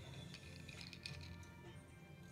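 Faint background music with a few light clinks and ticks.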